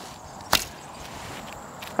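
Longbow loosed once about half a second in: a single sharp snap of the bowstring on a deliberately light, weak shot.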